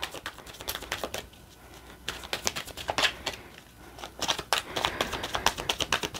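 A deck of tarot cards being shuffled overhand from hand to hand: a run of quick, irregular clicks and snaps of card edges, with two short lulls.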